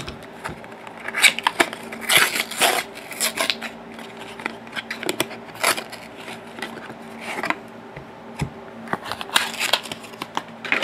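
A thin cardboard trading-card box and its paper wrap being torn open by hand, in several short bursts of ripping and rustling, with the card stack handled and set down.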